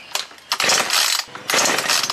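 Recoil starter of a Kanto two-stroke chainsaw being pulled twice, the rope and ratchet whirring with the engine cranking on each pull; on the second pull the engine starts to fire. This is the test start after the carburetor has been repaired and reassembled.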